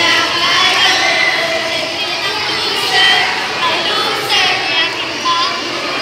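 A crowd of children shouting and cheering at once, many high voices overlapping in a continuous din.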